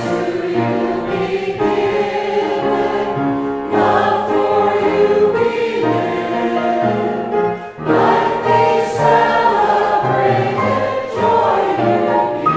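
Small church choir singing a hymn with instrumental accompaniment, with a brief break between phrases about eight seconds in.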